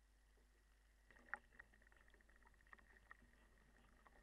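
Near silence, with faint water lapping and a scatter of small ticks in a water tank starting about a second in.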